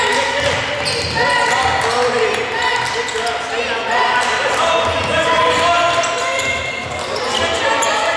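Basketball game on an indoor hardwood court: sneakers squeaking again and again in short, high chirps, with the ball bouncing as it is dribbled.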